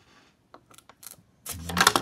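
Hard plastic graded-card slab being handled and set down: a few light clicks, then a louder clatter in the last half second.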